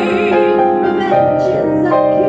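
Female vocalist singing held, operatic-style notes with vibrato over live grand piano accompaniment.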